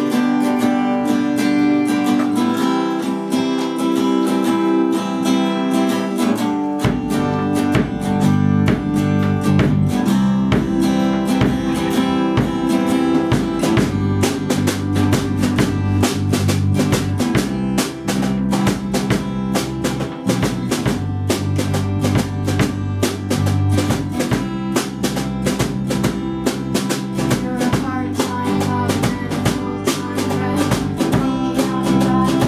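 A small band playing an acoustic pop song: acoustic guitar strumming the opening, then drum kit and bass joining about seven seconds in, with steady cymbal or hi-hat hits from about halfway.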